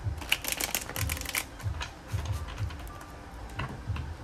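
A deck of tarot cards being riffle-shuffled by hand: a quick fluttering run of card clicks over the first second and a half, then a few scattered taps as the deck is squared up.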